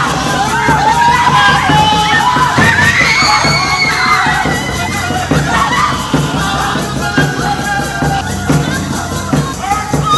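Several women's voices wailing and crying out together in anguish over a dhol, a two-headed barrel drum beaten by hand. The wailing is loudest in the first half.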